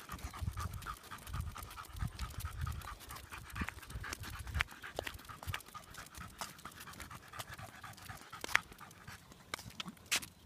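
Staffordshire bull terrier panting in quick, even breaths. Faint sharp ticks come throughout, with dull low thumps over the first half.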